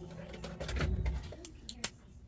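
Muffled handling bumps, then three sharp clicks in quick succession near the end.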